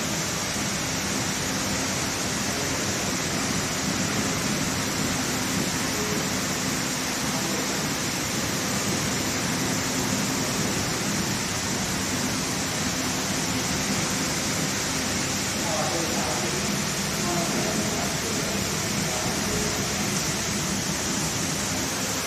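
Steady hiss of workshop background noise, even and unchanging, with faint voices talking in the background about two-thirds of the way through.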